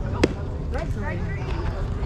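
One sharp pop of a pitched baseball smacking into the catcher's mitt, about a quarter second in, over faint voices of players and spectators.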